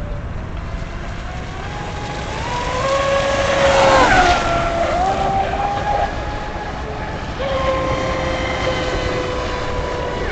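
Radio-controlled hydroplane's Leopard brushless electric motor on a 4S LiPo pack, whining at speed. The whine climbs in pitch to its loudest and highest about four seconds in, drops sharply, then holds steady through the second half.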